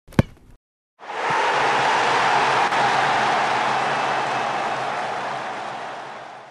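Logo sound effect: a single sharp hit, then after a short gap a steady rushing noise that slowly fades out.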